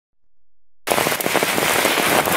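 Rain falling on a road and foliage, a dense patter of many small drop impacts that cuts in suddenly about a second in.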